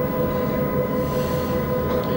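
A steady mechanical hum with a low rumble and a fixed, faint high tone, unchanging throughout: background equipment noise in the scanning room.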